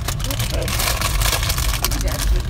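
Road noise inside a moving car's cabin: a steady low rumble from engine and tyres with a hiss of air and road over it.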